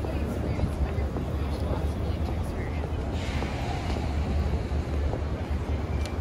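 Busy city street at night: a steady low rumble of traffic with snatches of passers-by talking, and a short hissing swell of a passing vehicle about halfway through.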